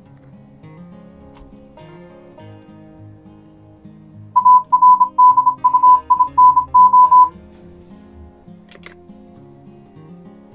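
Computer-generated Morse code tone, a text-to-Morse audio file spelling "Arduino", played as a quick run of short and long beeps at one steady high pitch for about three seconds starting about four seconds in. Quiet guitar music plays underneath.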